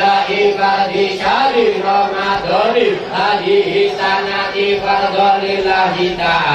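Men's voices chanting a melodic Arabic devotional chant, with long held notes broken by rising and falling turns in pitch.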